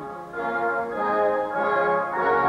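Symphony orchestra playing slow, sustained chords that swell after a soft start.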